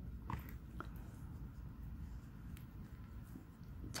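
Faint handling sounds of crocheting: a few soft clicks and rustles as the crochet hook and yarn are handled, over a low steady hum.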